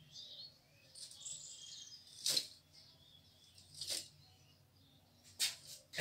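A whiteboard marker writing: faint high squeaks, then a few short scratchy strokes spaced a second or more apart.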